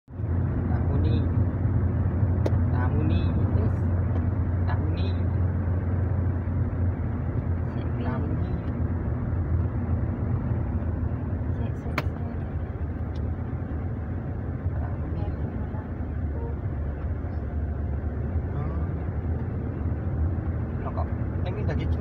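Steady low rumble of a Toyota car's engine and tyres heard from inside the cabin while driving, with one sharp click about halfway through.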